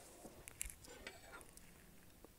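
Faint rustle and a few soft clicks of a sheet of paper being folded in half and creased flat against a tabletop.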